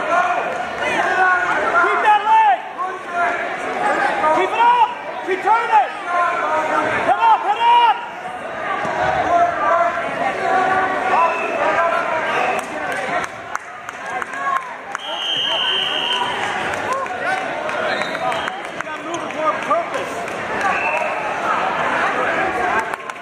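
Spectators' and coaches' voices calling out and overlapping in a large gym hall, with a brief steady high tone about fifteen seconds in.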